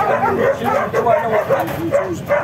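Young puppies in a wire crate whimpering and yipping: many short, high, rising-and-falling cries in quick succession.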